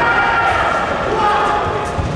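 Voices calling out in a large sports hall, with a few thuds of karate fighters' bare feet on the foam mats.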